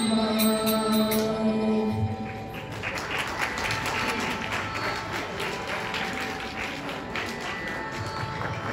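A child's voice holds the last note of a song through a microphone for about two seconds, then an audience claps.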